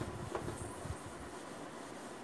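Whiteboard eraser rubbing across a whiteboard as it is wiped clean: a faint, steady rubbing with a few light knocks in the first second.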